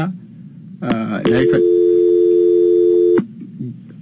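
Telephone dial tone: a steady, unbroken tone of two blended pitches lasting about two seconds, cutting off suddenly, heard over a phone line after a few words of speech.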